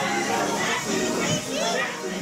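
Several high-pitched character voices chattering and calling over one another, from the ride's Audio-Animatronic show soundtrack.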